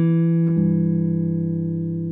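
2013 Gretsch White Falcon Players Edition G6139CB electric guitar through a 1963 Fender Vibroverb amp: a chord left ringing, with a lower note joining about half a second in, slowly fading.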